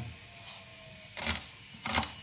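Kitchen knife slicing a peeled onion into long strips on a bamboo cutting board: two short cuts, each ending in a knock of the blade on the wood, one just past a second in and one near the end.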